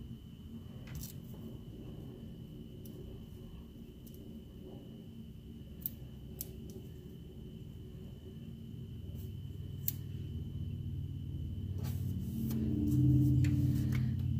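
Faint, scattered clicks and light taps of metal tweezers and a paper sticker being handled and pressed onto a planner page, over a steady low hum that grows louder near the end.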